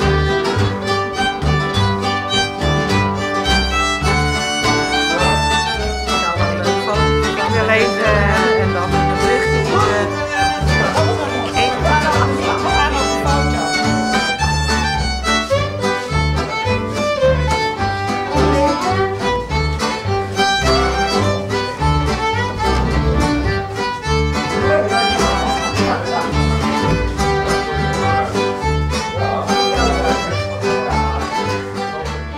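Fiddle, acoustic guitar and upright double bass playing a traditional tune together, the fiddle carrying the melody over the guitar's chords and a steady beat of bass notes.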